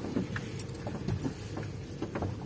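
Car moving slowly over a rough dirt road, heard from inside the cabin: a steady low rumble of engine and tyres with many small, irregular rattles and clicks from the car jolting over the ruts.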